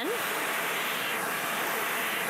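Bissell Pet Hair Eraser canister vacuum running on the hose with its pet brush tool, a steady rushing suction noise that swells and eases slightly as the tool passes over a fabric lampshade.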